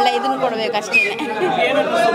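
Speech only: a woman talking, with a murmur of other voices in the background.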